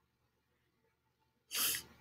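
A single short, sharp rush of breath about one and a half seconds in, fading quickly.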